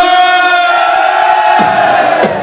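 Live halay folk-dance music from a local band: a long held melody note, rich in overtones, that bends downward and breaks off about one and a half seconds in as lower accompanying sounds come in.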